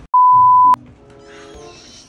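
Edited-in beep sound effect: one loud, steady, high beep of about half a second that ends with a click. Background music continues quietly after it.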